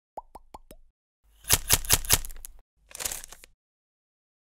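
Channel logo intro sound effects: four quick rising plops, then four loud sharp hits in quick succession, and a short swish near the end.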